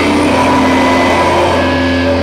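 Live heavy metal band playing loud: heavily distorted electric guitars and bass holding long, sustained chords in a steady drone.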